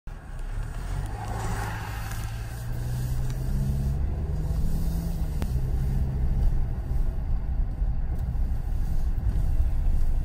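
Low rumble of a car's engine and road noise heard from inside the cabin as the car drives along, with the engine hum growing louder a few seconds in.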